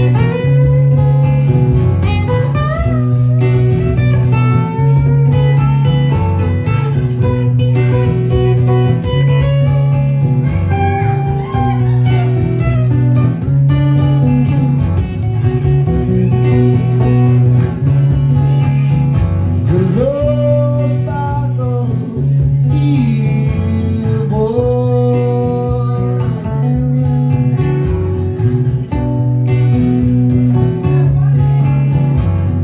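Cole Clark acoustic guitar played as a blues-rock instrumental: riffs over a repeating low bass note, with string bends that glide the melody notes up and down, one long rising bend about two-thirds of the way in.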